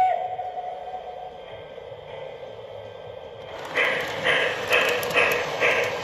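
Model steam locomotive's onboard sound system: a whistle gives two short toots and then holds for about a second and a half. A few seconds later steam chuffs start at about two a second as the locomotive pulls away.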